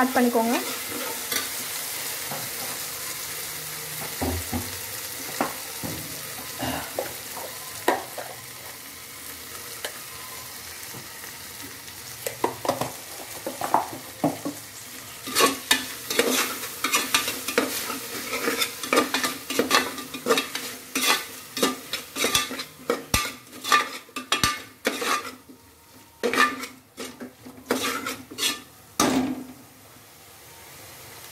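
Onions, tomatoes and green chillies sizzling as they fry in an aluminium pot, stirred with a spoon. The spoon's scraping against the pot becomes quick and frequent about halfway through.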